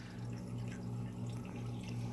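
Aquarium water trickling and dripping, with a steady low hum from the tank's filter pump underneath.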